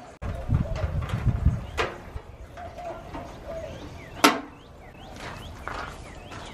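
Birds chirping outdoors, with a few sharp knocks and clicks; the loudest, a single sharp click, comes about four seconds in.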